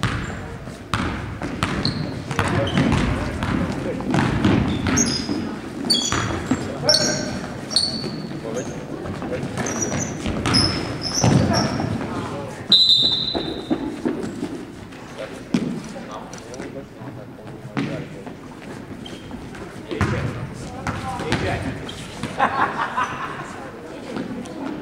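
Basketball bouncing on a hardwood gym floor, with short high sneaker squeaks and people's voices, all echoing in a large gym.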